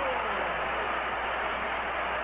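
Stadium crowd cheering after a goal, a steady roar heard through old broadcast audio.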